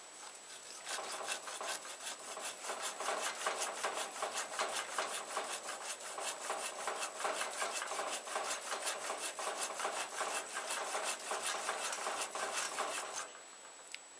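A hand tool rasping rapidly to and fro, about four strokes a second. It starts about a second in and stops shortly before the end.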